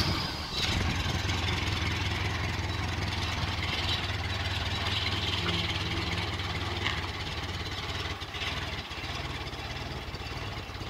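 An old forklift's engine running steadily as the forklift drives forward, dropping a little in level about nine seconds in.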